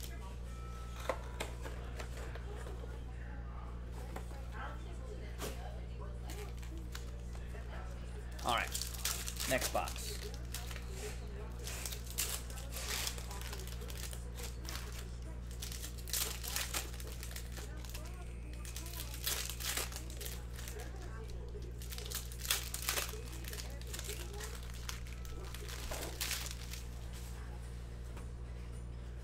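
Foil trading-card pack wrappers (Panini Prizm Draft Picks) being torn open and crinkled by hand, in repeated short bursts of crinkling and tearing, over a steady low hum.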